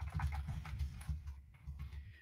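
Faint, irregular taps and clicks of typing on a computer keyboard, with soft low knocks carried through the desk.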